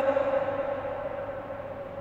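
Amplified reverberation of a man's voice through a microphone and loudspeakers in a large hall: after the words stop, a steady ringing tone hangs on and slowly fades.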